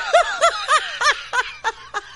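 Laughter, a quick run of short 'ha' syllables, each rising and falling in pitch, about three a second, growing fainter toward the end.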